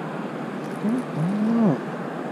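A man's short wordless 'hmm': a brief rising murmur about a second in, then a longer hum that rises and falls. Under it, a steady rushing background of beach wind and surf.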